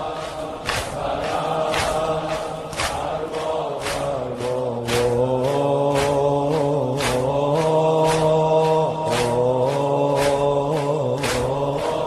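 Persian-language Shia lament (noha) sung by chanting voices over a steady beat, with the voices holding long notes from about four seconds in.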